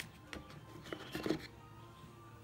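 Handling noise of plastic and cardboard packaging: a few light taps and rubs as the power adapter is lifted out of its moulded cardboard tray, busiest about a second in.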